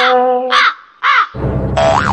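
Edited-in comedy sound effects: a held musical note ends, and two short squawking calls follow about half a second apart. About a second and a half in, loud music starts with a wavering, siren-like tone.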